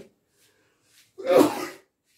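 A man sneezing once, a single short, loud burst about a second into a pause in his speech.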